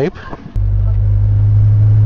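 An old 1983 motorhome's engine running at a steady low drone while driving, heard from inside the cab. It cuts in abruptly about half a second in, after a brief laugh.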